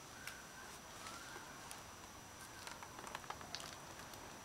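Quiet background hiss with a thin, steady high-pitched whine and scattered soft clicks and crackles, a little busier near the end.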